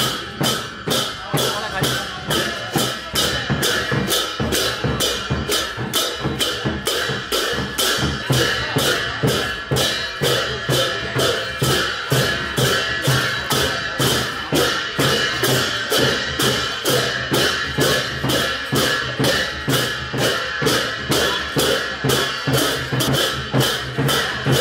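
Large brass hand cymbals (jhyamta) clashing with a drum in a steady Sakela dance beat, about two strokes a second, with people talking over it.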